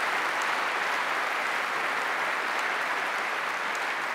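Large conference-hall audience applauding steadily, a dense, even clapping sound.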